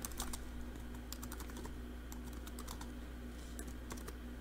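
Computer keyboard being typed on: irregular key clicks over a faint steady hum.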